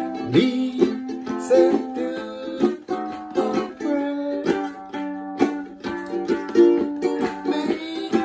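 Ukulele strumming chords in a steady rhythm, an instrumental passage of the hymn accompaniment.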